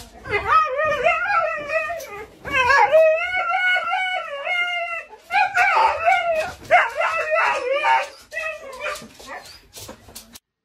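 A husky howling and whining in a series of long, wavering calls that rise and fall in pitch, the longest about two and a half seconds, with shorter calls near the end.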